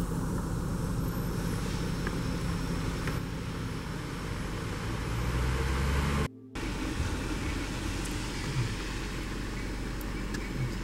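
Car engine running with road noise, heard from inside the car. The low hum swells a little about five seconds in, then drops out for a moment about six seconds in before carrying on.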